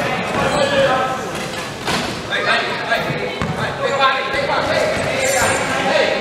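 Wheelchair basketball game sound in an echoing sports hall: a basketball dribbled on a wooden court, with players' shouts and calls among some sharp knocks.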